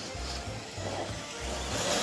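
Background music with a repeating bass beat.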